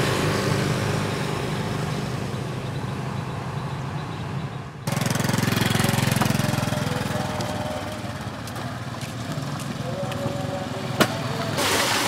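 Outdoor road ambience with a low hum of traffic, then, after a cut about five seconds in, the engines of several small motorbikes running as they ride along a dirt lane, their rumble easing over the following seconds. A click about eleven seconds in, and just before the end a cut to water pouring from a bucket into a plastic tub.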